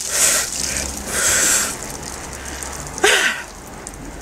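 A man gasping and hissing sharp breaths from the shock of ice-cold water just poured over his head, with the water splattering off him, then a short voiced cry about three seconds in.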